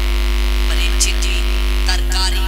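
Steady low electrical mains hum from a microphone and amplifier setup, with a few short fragments of a voice about a second in and near the end.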